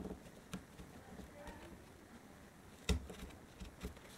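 Faint handling sounds of ribbon and a metal stylus working against a chipboard journal cover: light rustling and small scattered clicks, with one sharper tap about three seconds in.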